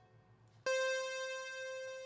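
A single synth keyboard note from a Juno-style preset, starting suddenly about two-thirds of a second in and slowly fading.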